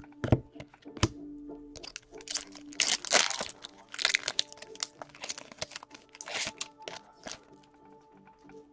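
A foil hockey card pack torn open and crinkled by hand, a run of crackling, tearing bursts through the middle. A couple of sharp clicks come first, near the start.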